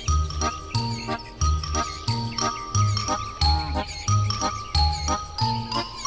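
Children's cartoon background music: a steady, bouncing bass note about every two-thirds of a second under a bright, tinkling melody of held notes.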